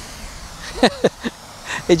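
A man's voice makes a few short sounds about a second in and starts speaking again near the end, over a steady outdoor background hiss.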